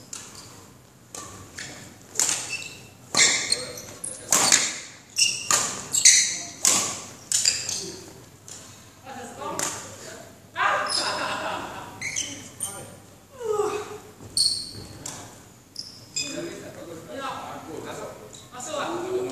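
Badminton shoes squeaking and thudding on a hard hall floor during a footwork drill: an irregular run of sharp high squeaks and footfalls as the player lunges and pushes off.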